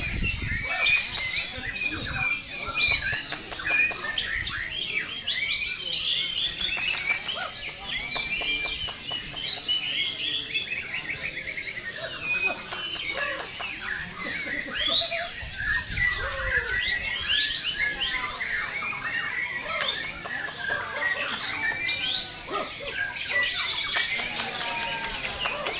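White-rumped shamas singing, dense and overlapping: repeated clear high whistles mixed with rapid chattering and chirping phrases.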